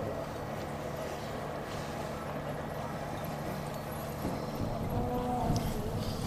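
Steady background noise with a low hum and faint distant voices; no distinct sound from the mule or the seeder stands out.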